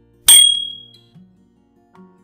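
A single sharp metallic ding that rings and fades over about half a second: the notification-bell sound effect of a subscribe-button animation, over faint background music.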